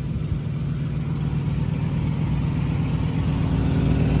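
International semi truck's diesel engine running with a steady low drone, growing a little louder near the end.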